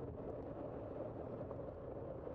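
Steady rolling noise of a bicycle ride on pavement, picked up by a bike-mounted camera: tyre and wind noise with no distinct events.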